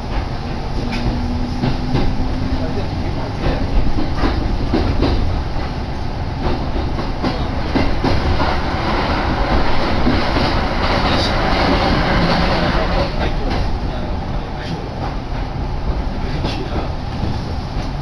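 Interior noise of a Kintetsu electric train pulling out of a station and running on, with wheels clicking over rail joints. In the middle a louder rushing stretch comes as a train passes close on the adjacent track.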